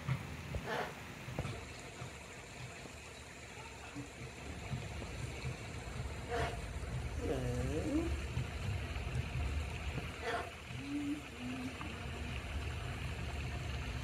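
A few short, soft voice-like calls, one with a gliding pitch, over a low steady rumble.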